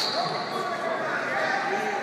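Several voices talking at once in a large, echoing sports hall.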